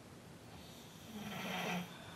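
A sleeping person snoring: one faint snore about a second in, lasting under a second.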